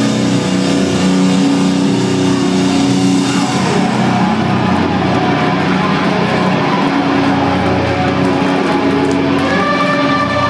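Loud live hardcore punk: distorted electric guitars hold a droning, sustained chord, with cymbal wash that thins out a few seconds in.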